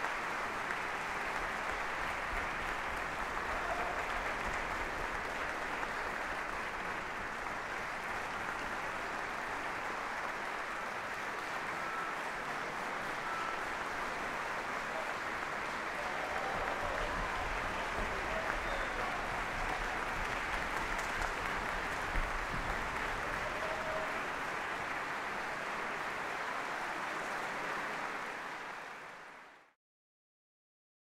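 Concert-hall audience applauding steadily, fading out near the end.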